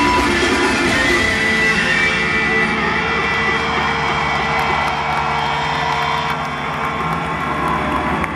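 A live band holds sustained guitar and keyboard chords as a song ends, over concert crowd noise; the sound eases slightly about six seconds in.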